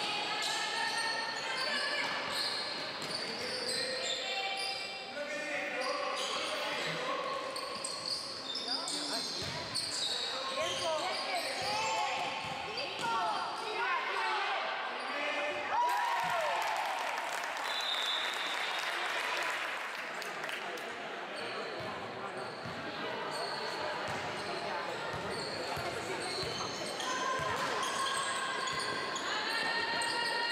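Sounds of a basketball game in an echoing sports hall: a ball bouncing on the court, shoes squeaking during a flurry of movement around the middle, and players and spectators calling out throughout.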